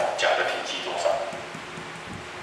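A man's voice speaking Mandarin into a headset microphone, trailing off about halfway through, followed by a quieter pause with faint room noise.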